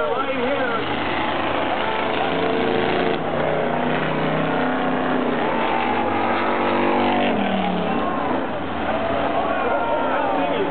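Race car engines revving on the track, their pitch rising and falling, with one sliding down in pitch about eight seconds in as a car backs off. Voices can be heard over them.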